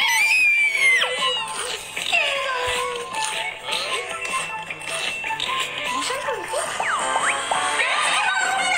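Background music mixed with excited voices and sliding, rising and falling effect tones, heard through a screen's speaker and picked up by a phone.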